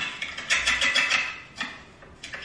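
Freshly cut cucumber slices tipped from a vegetable slicer into a glass container, sliding and clattering as a dense patter of small clicks for about a second, followed by a single knock.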